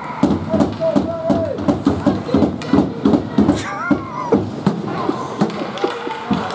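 Steady hand clapping in gloves, about four claps a second, with voices calling out behind it.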